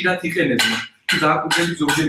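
Metal spoon clinking and scraping in a stainless-steel pot of mushrooms, with a voice over it.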